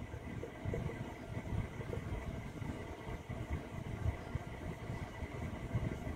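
Marker pen writing on a wall-mounted whiteboard: faint, irregular low rubbing and knocking from the pen strokes.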